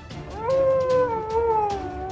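One long wailing cry, held for about two seconds, rising at the start and then sliding slowly down in pitch.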